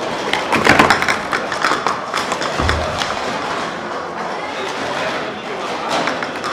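Plastic sport-stacking cups clattering in quick clicks, densest near the start, with one dull thump about two and a half seconds in.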